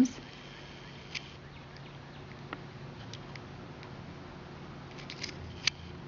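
Quiet room tone: a low steady hum under a faint hiss, with a few faint, scattered clicks and taps.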